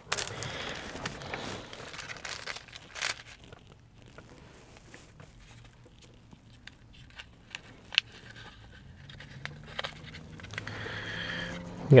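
Takeaway food packaging rustling and crinkling as it is handled and opened, busiest in the first three seconds, then only scattered small clicks.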